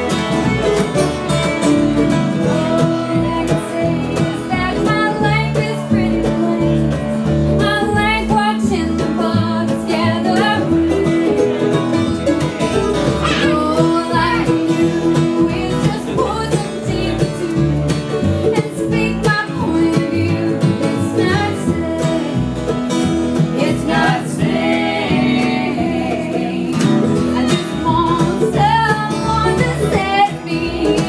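Live acoustic bluegrass band playing: upright bass, acoustic guitar and other plucked string instruments, with sung vocals coming in a few seconds in and carrying on over the playing.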